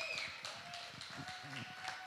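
Light, scattered hand clapping from a small congregation, faint and irregular.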